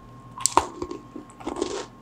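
Chewing a mouthful of crunchy chocolate-dipped almond biscotti: crackly crunches about half a second in and again near the end.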